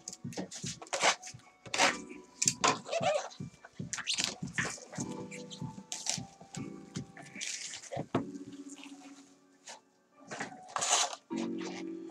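Crinkling of plastic wrap and scraping and flexing of cardboard as a sealed, taped Panini Prizm hobby box is handled and opened, in a quick run of short crackles and rustles.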